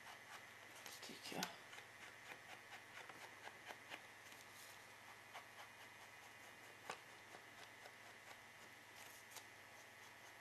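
Near silence with faint rustling and light ticks of a small sheet of paper being handled and its edges rubbed, a slightly louder rustle about a second and a half in, over a faint steady hum.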